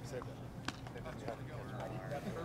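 Indistinct men's voices talking, with one sharp knock about two-thirds of a second in.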